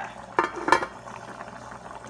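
Pot of black beans at a rolling boil, with two sharp clicks a fraction of a second apart in the first second.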